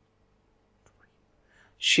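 Near silence with a faint steady hum and a soft click about a second in; near the end a voice starts reading aloud in English.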